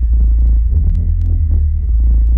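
Techno track from a 1998 vinyl record: a loud, deep bass drone that throbs steadily, with pulsing low synth tones and sparse light clicks above it.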